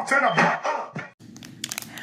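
Intro music with singing, cut off suddenly about halfway through; then faint crinkling and clicking of a clear plastic package of braiding hair being handled.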